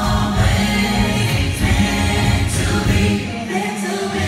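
Live R&B concert music: women singing into microphones over loud amplified music with heavy bass. Near the end the bass drops out for a moment while the singing carries on.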